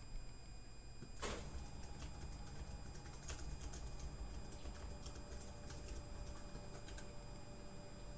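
Faint, irregular clicking of computer keys over a low steady hum, with one sharper click about a second in.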